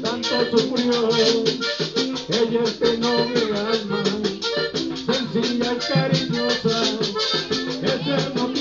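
Live accordion band playing an instrumental passage with no singing. A button accordion carries the melody over guitar, a hand drum and fast, even percussion that keeps going without a break.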